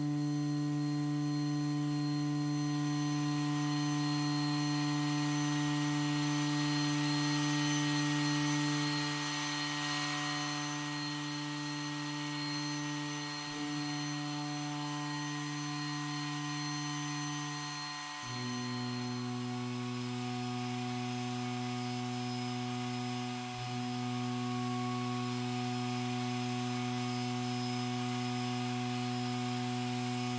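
Sustained electronic buzz drone from a sampled 'Buzz 1' layer of FrozenPlain's Signal Interference library, played in the Mirage sampler, with steady hiss above it. About 18 seconds in it steps down to a lower pitch.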